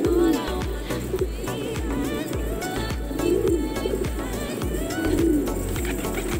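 Domestic pigeons cooing in repeated low swells, with background music playing over them.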